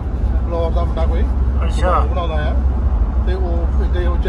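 Steady low road and engine rumble inside a car's cabin at highway speed, with people talking over it in short snatches.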